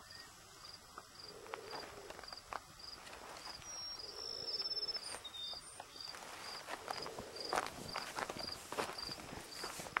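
Faint, steady chirping of a cricket, a little under two chirps a second, with footsteps on dry ground, more of them in the second half.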